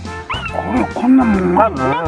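A newborn kitten mewing repeatedly, short cries that rise and fall in pitch, over background music.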